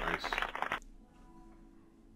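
Rapid typing on a computer keyboard, a quick run of key clicks that stops just under a second in. After it, faint background music with a few held notes.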